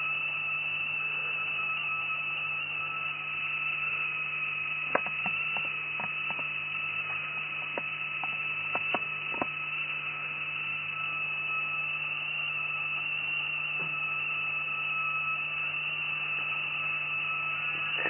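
Home-built spark-gap system running with a steady high-pitched whine over a low hum. A run of sharp clicks comes about five to nine seconds in.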